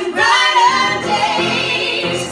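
Three women singing a song together in harmony with live upright piano accompaniment, holding long notes.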